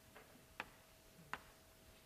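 Two sharp taps of chalk on a board, about three-quarters of a second apart, over a faint steady hum in a near-silent room.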